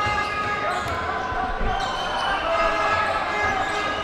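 A basketball being dribbled on a hardwood court in a large indoor hall, over a steady din from the hall.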